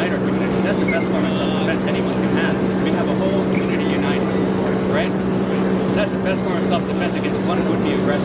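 A steady low machine hum, like a running motor, holds at one pitch throughout under indistinct talking voices.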